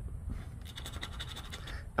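Coin scratching the silver coating off a paper scratch-off lottery ticket, a run of quick short strokes in the middle.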